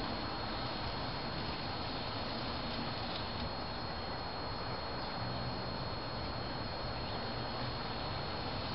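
N-scale model train running on its track: a steady hiss with a constant high-pitched whine.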